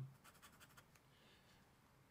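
Faint scratching of a fountain pen's steel nib on paper as it draws short strokes.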